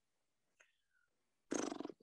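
Near silence, then about a second and a half in, a short creaky, gravelly voice sound as a man starts to speak, a drawn-out 'ahh' in vocal fry.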